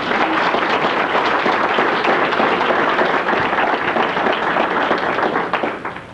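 Audience applauding: many hands clapping in a dense patter that dies away near the end.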